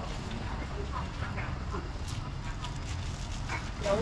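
Busy street-market background: a steady low rumble with faint, scattered voices of people nearby. A woman's voice starts speaking just before the end.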